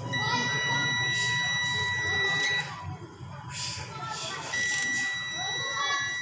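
Digital multimeter's continuity buzzer sounding two long, steady high-pitched beeps as the probes bridge the alternator rotor's two slip rings. The beep signals continuity through the rotor field winding, a low resistance of a few ohms, so the winding is not open.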